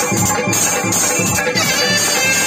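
Live folk band music: clarinets playing a sustained melody over a steady hand-drum beat.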